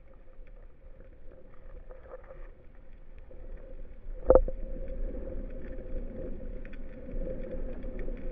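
Underwater sound heard through a camera housing: a faint steady hum and a low rumble, with one sharp knock about four seconds in, after which the rumble grows a little louder.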